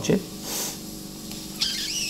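A man's narrating voice finishes a word, then pauses over a faint steady low hum. There is a brief soft hiss about half a second in and a short breath-like sound near the end, just before he speaks again.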